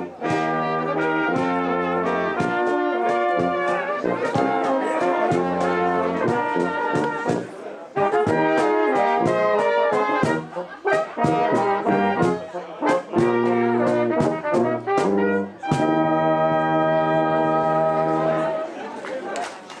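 A Tyrolean brass band plays a folk tune, led by flugelhorn over tuba bass, in a steady beat. The music breaks briefly a few times and ends on a long held chord.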